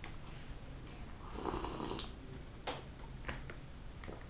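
A man chewing puff pastry with his mouth closed, with a few wet mouth clicks. About a second and a half in there is a noisy breath through the nose.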